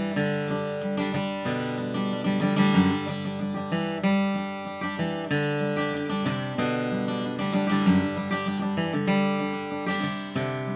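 Steel-string acoustic guitar flatpicked with a Blue Chip TD40 pick, a 1 mm teardrop, in bluegrass style: an unbroken run of picked notes mixed with strums. The tone is clear and bright.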